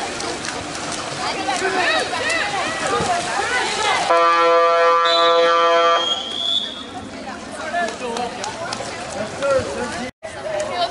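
Water polo game buzzer sounding once, a steady, loud buzzing horn about two seconds long starting about four seconds in. A high whistle overlaps its second half, and spectators' voices are heard before and after.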